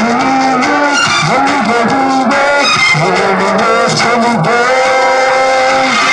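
A man singing into a handheld microphone, his voice amplified, holding one long steady note in the second half.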